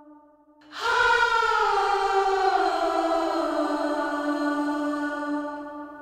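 Stacked, distorted backing vocals, a man's and a woman's voice blended, drenched in a long mono plate reverb (ValhallaPlate, 5.4 s decay) that pulls them towards the centre. A reverb tail dies away, then about a second in a new sung note enters, slides down in pitch and is held, fading near the end.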